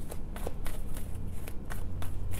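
A deck of tarot cards being shuffled by hand: a run of quick, irregular card flicks and slaps.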